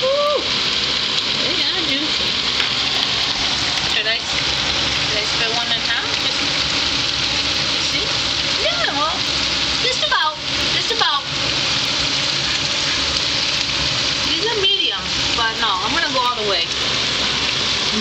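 Meatballs frying in oil in a skillet: a steady sizzle.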